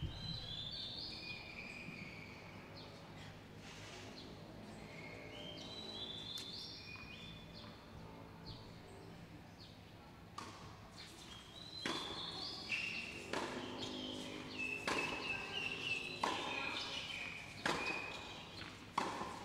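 Tennis being played: sharp racket strikes and ball bounces, sparse at first, then a rally with a hit about every second and a half from about ten seconds in. High chirping calls sound over it.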